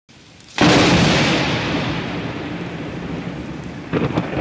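A thunderclap that cracks suddenly about half a second in and rolls on, slowly fading, with a second crack starting just before the end.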